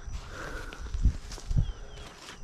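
Outdoor ambience: a steady high insect chirr, with a couple of soft low thumps about a second in and again half a second later.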